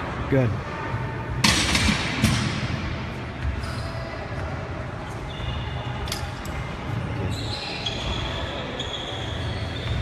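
Busy gym background: low repeated thuds and distant voices, with a loud, brief rush of noise about one and a half seconds in.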